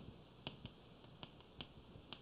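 Chalk tapping and clicking against a blackboard while characters are written: about six faint, sharp taps at uneven intervals.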